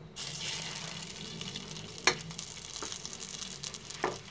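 A minced-meat seekh kabab sizzling in hot oil in a steel pot: a steady frying hiss that starts suddenly as it goes in, showing the oil is hot enough to fry. A sharp click about halfway through, and a fainter one shortly after.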